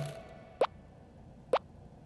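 Two short cartoon plop sound effects about a second apart, as the background music fades out at the start.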